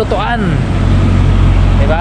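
A motor vehicle's engine idling close by: a steady low hum.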